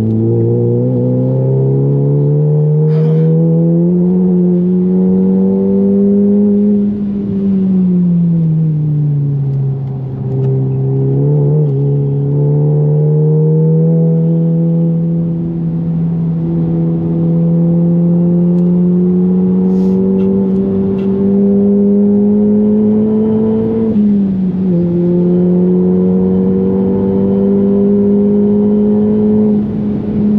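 Volkswagen Golf GTI's turbocharged 2.0-litre four-cylinder, heard from inside the cabin, pulling hard with its pitch climbing steadily as the car gathers speed. About seven seconds in the revs sink smoothly for a few seconds before it pulls again, and near the end an upshift drops the pitch briefly before it climbs once more.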